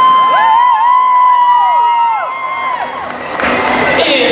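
A group of young cheerleaders screaming together in celebration: many high-pitched held shrieks that rise at once, hold for about two seconds and fade out near the three-second mark. Announcer's speech over the public address follows near the end.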